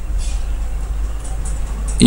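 Steady low electrical hum with faint hiss: the recording's background noise, with no distinct event.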